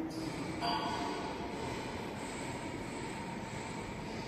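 Steady rushing background noise with a faint hum that sets in about half a second in; no distinct event stands out.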